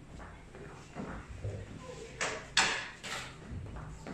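Plastic drafting instruments handled and slid on a drawing board, with two short scrapes a little past halfway, the second louder.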